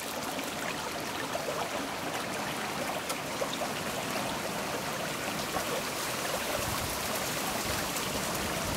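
Running water of a stream: a steady, even rush of flowing water.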